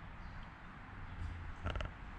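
A short squeaky creak near the end, over a low steady rumble.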